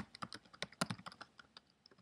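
Typing on a computer keyboard: a quick, irregular run of key clicks, thinning out near the end.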